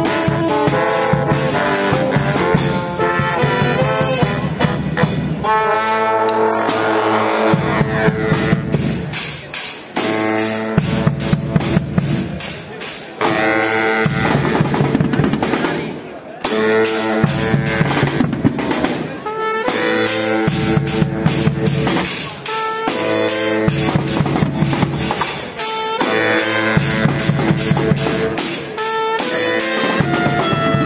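Live brass band playing: saxophones and other brass horns over a steady drum beat.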